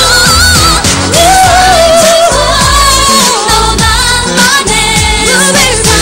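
Korean pop song performed live: a female lead vocal sung into a handheld microphone over a full pop backing track, with a note held for about a second starting about a second in.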